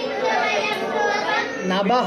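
A class of voices chanting a Sanskrit verse together, repeating the line after the teacher. A man's voice takes up the next line near the end.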